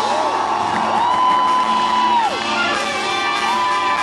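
A live band with horns and drums plays on while the audience cheers and whoops over it, with one long whoop held in the middle that glides up at the start and down at the end.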